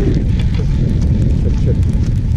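Wind buffeting the microphone of a helmet camera on a moving chairlift: a dense, steady low rumble with scattered faint ticks.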